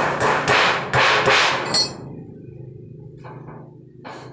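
Thin galvanized iron sheet clattering as it is hammered and bent by hand: a quick series of loud metallic bangs over about two seconds, then only a low steady hum.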